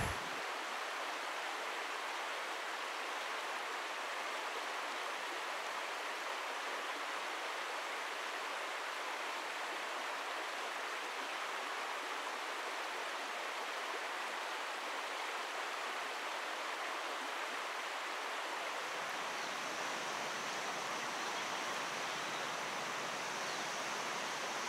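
Rushing river water, a steady, even hiss of flowing water with little low rumble.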